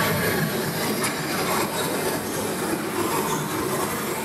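Steady machinery noise from an automatic wood veneer line, with the conveyor running as thin veneer sheets pass along it.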